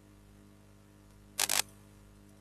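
Computer mouse double-click: two sharp clicks in quick succession about a second and a half in, over a steady low mains hum.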